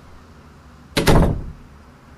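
A single loud, heavy slam about a second in, deep in tone, fading within about half a second.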